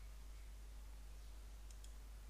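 Quiet room tone with a steady low hum, and two faint clicks of a computer mouse close together near the end.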